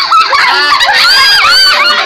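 Loud, high-pitched shrieking calls from several sources at once, overlapping and gliding up and down in pitch.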